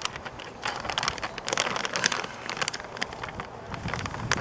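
An AutoSock bag being opened and its contents handled: a steady run of irregular rustling and crinkling crackles.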